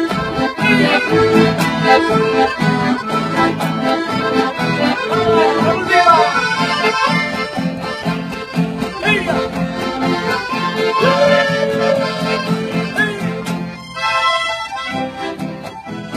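Lively accordion-led dance music with a steady quick beat, a few gliding notes in the melody, and a short break near the end where the bass drops out before the tune resumes.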